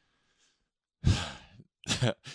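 A man sighing: one breathy exhale about a second in that fades off within about half a second, with the start of speech near the end.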